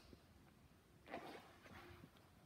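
Near silence: room tone, with one faint soft sound about a second in.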